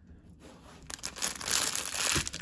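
Small clear plastic LEGO parts bag crinkling as it is handled, starting about a second in and growing louder toward the end.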